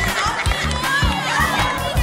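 A group of children shouting and cheering over loud music with a heavy, steady bass beat.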